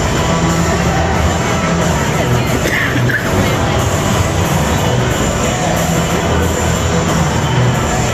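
Ballpark PA music playing through the stadium speakers over the steady murmur of a large crowd.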